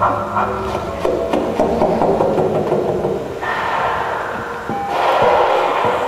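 Live improvised experimental music: a dense, noisy texture with some held tones. A low drone sits under the first second, and a louder wash of higher sound comes in about three and a half seconds in.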